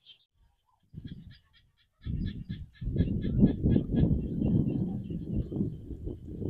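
Wind buffeting the microphone in gusts, the loudest sound from about two seconds in. Behind it a bird calls in a rapid run of high notes, about six a second, fading after the first few seconds.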